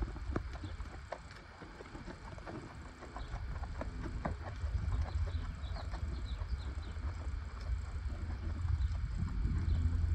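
Low steady rumble of wind on the microphone in an open pen, with scattered soft thuds of a horse's hooves on sand and a few faint bird chirps about halfway through.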